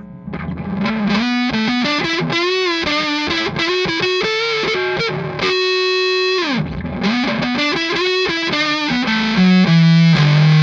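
Nash T-57 Telecaster through a Walrus Audio Jupiter fuzz pedal into a Morgan RCA35 amp, playing a fuzzy single-note lead line with bends and vibrato. About halfway through it holds one note for about a second, which then bends down, and it ends on a low sustained note, the loudest part.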